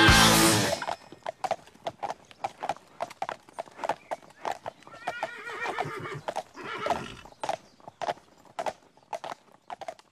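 A rock song cuts off in the first second. Horse hooves then clip-clop at about three steps a second, and a horse whinnies midway, its call wavering in pitch.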